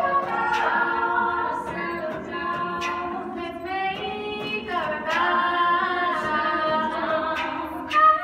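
Female a cappella group singing sustained chords in several parts, with voices changing pitch together every couple of seconds and a few sharp percussive hits among them.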